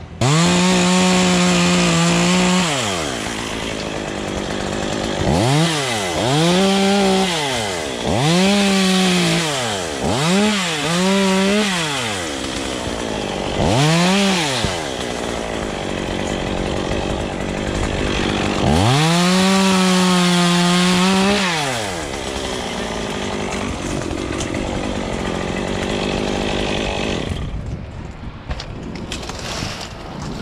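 Chainsaw revving up to full throttle and dropping back, about six times, with lower running between the bursts as it cuts through limbs. The longest runs at full throttle come at the start and about two-thirds through.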